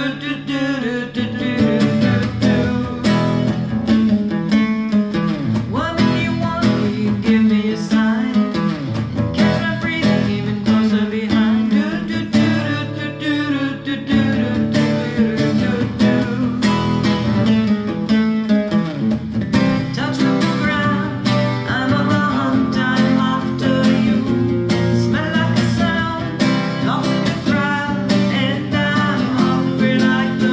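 Acoustic guitar strummed steadily while a woman and a man sing together, a live acoustic duo performing a song.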